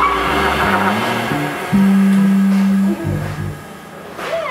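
An electric band's held chord rings out and fades, then a few low electric bass notes follow, one held steady for about a second. The playing thins out near the end.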